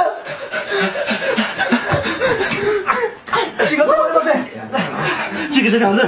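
Voices only: speech mixed with chuckling.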